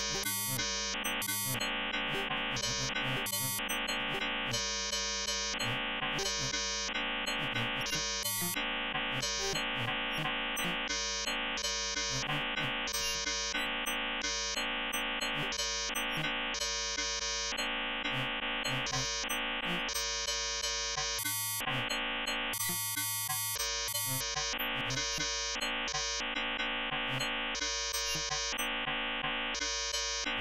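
Synthesized electronic drone from a Max 8 patch: dense stacks of steady, buzzing tones, with a bright upper layer cutting in and out in irregular blocks while the overall loudness stays even.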